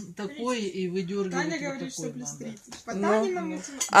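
Only speech: people talking at a table in a small room, quieter than the talk around it.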